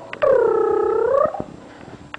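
Bichon Frise puppy giving one loud whine of about a second, dipping a little in pitch and rising at the end.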